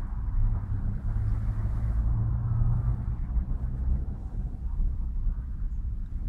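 Steady low rumble inside a Škoda Fabia's cabin.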